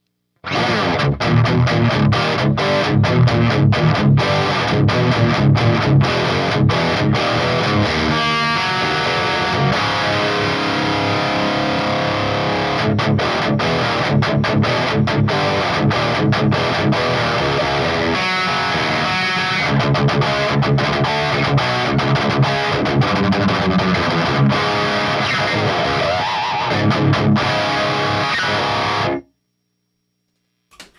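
Electric guitar played through a Finch Electronics Scream overdrive pedal, a Tube Screamer-style circuit, set with all switches down and all knobs at noon, into a Redbeard Poltergeist amp and a 2x12 cabinet. Distorted riffing with many fast picked notes and a few held chords, cut off abruptly near the end.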